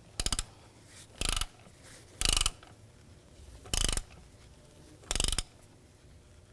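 Ratchet wrench being worked back and forth on the oil filter housing bolts: five short bursts of rapid pawl clicking, about one to one and a half seconds apart.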